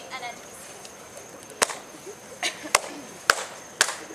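Five sharp, unevenly spaced hand claps from a step routine, starting about a second and a half in.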